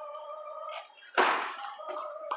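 One short, loud rush of breath from a person's mouth about a second in, a puff of air with no voice in it.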